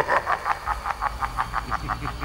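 A man laughing in a rapid, even staccato, about seven short pulses a second, slowing slightly near the end.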